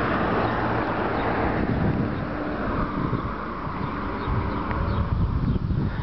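Outdoor street noise: a hiss of traffic on the road, strongest in the first couple of seconds and then easing off, with an uneven low rumble of wind on the microphone.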